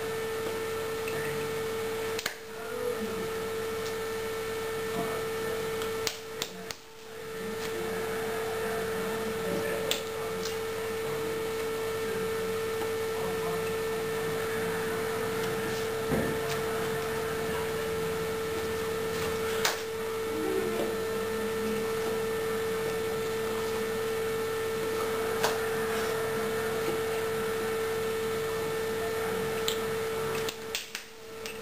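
A steady electrical hum on one constant tone, with a few brief clicks scattered through it.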